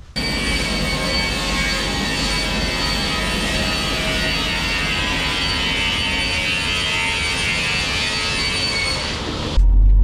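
Vertical panel saw running and cutting a black plywood sheet: a loud, steady motor whine with a high fixed tone, the cutting noise growing somewhat stronger midway. It cuts off suddenly near the end.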